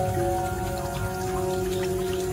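Tap water running and splashing onto strawberries in a bowl as they are rinsed, under soft background music with long held notes.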